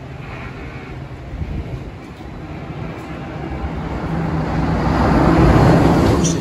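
Test Track ride vehicle running along the elevated outdoor track, a rumble of tyres and motor that grows steadily louder as it approaches, loudest near the end.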